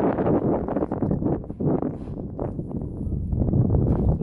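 Wind buffeting the microphone: an uneven, low rushing noise that rises and falls in gusts.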